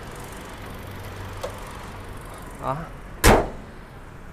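The bonnet of a 2022 Toyota Innova Venturer being shut with a single loud slam about three-quarters of the way through, over a low steady background hum.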